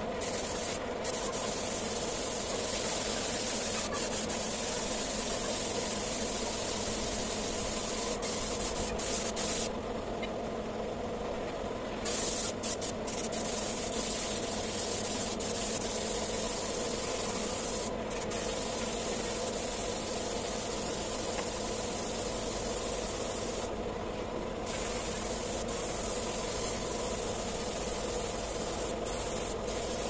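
Compressed-air paint spray gun hissing steadily as it sprays paint, cutting out briefly twice, around ten and twenty-four seconds in, when the trigger is released. A steady hum from the air compressor feeding the hose runs underneath.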